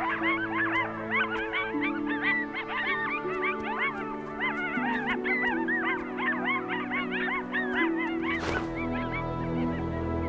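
A pair of coyotes yip-howling together, a fast overlapping chorus of rising and falling yelps, over sustained background music. The calling stops about eight and a half seconds in, leaving only the music.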